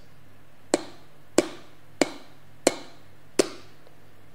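Five sharp clicks at an even pace, about 0.7 seconds apart, like a steady tapping beat.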